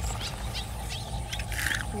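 Steady low wind rumble on the microphone, with scattered short chirps of small birds. About one and a half seconds in, a brief rustle as a hooked snakehead is hauled onto the grassy bank.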